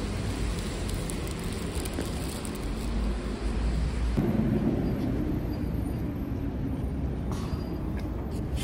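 Steady rumble of city road traffic, growing slightly louder about four seconds in.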